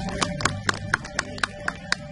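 Sharp, evenly spaced percussive clicks, about four a second, in time with the self-defence performance, over low music that is dying away.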